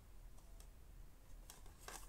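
Near silence: a low room hum with a few faint clicks and rubs from a plastic DVD case being handled.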